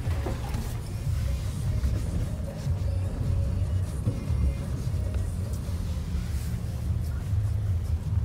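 Low, steady rumble of a pickup truck's engine and tyres heard inside the cab as it drives slowly over packed snow on lake ice.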